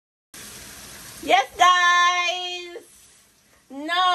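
A high voice singing: a note glides up about a second in and is held steadily for about a second, then another note rises and falls near the end.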